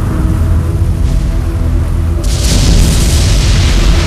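Dramatic film score with held notes over a deep, booming low end; about two seconds in, a loud rushing noise effect joins the music.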